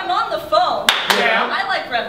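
Sharp hand claps, two close together about a second in, over chanted voices in a call-and-response 'roll call' cheer.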